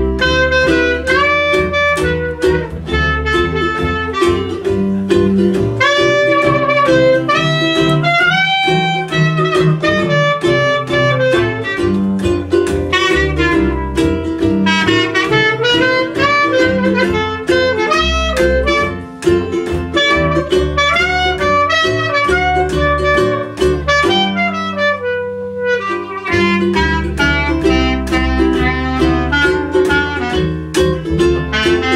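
Small acoustic jazz trio playing an instrumental chorus: clarinet takes the melody over plucked upright bass and a strummed ukulele.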